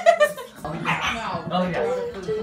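Puppy in a wire crate whimpering and yipping, with a loud rising cry at the start.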